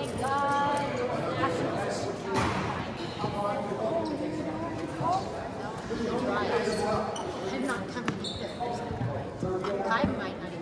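Voices and calls echoing in a large gymnasium, with a few sharp thuds on the hardwood floor.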